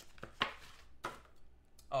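A few sharp clicks and taps of hard clear plastic card holders being handled, the loudest about half a second in.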